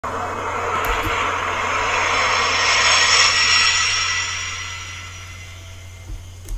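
A long rushing whoosh that swells to a peak about three seconds in and then fades away, over a steady low hum.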